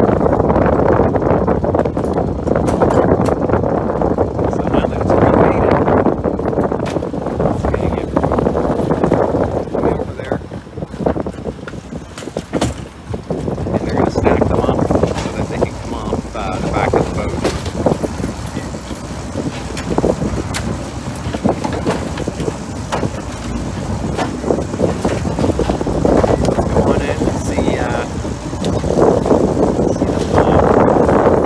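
Lobster boat's engine running with wind and sea noise, and the knocks of wire lobster traps being handled on the rail, with indistinct crew voices at times.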